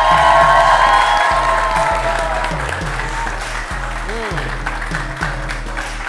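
A studio audience applauding over background music with a repeating bass line; the clapping eases off slightly toward the end.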